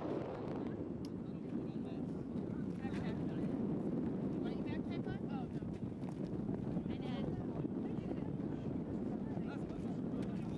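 Steady wind buffeting the camcorder microphone, with faint voices of people talking in the background now and then.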